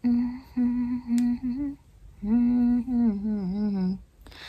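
A woman humming a tune with her lips closed: two phrases of held notes, the first a few short notes on one pitch, the second a longer note that dips and wavers in pitch toward the end.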